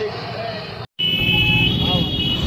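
Road vehicle and street noise with a faint voice, broken by an abrupt gap of silence just under a second in. After the gap, a low vehicle rumble returns with a steady high tone over it.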